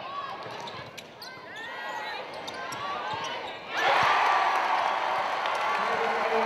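Indoor basketball game sounds: a ball bouncing on the hardwood court and short sneaker squeaks. About four seconds in comes a sudden, much louder burst of crowd cheering and shouting.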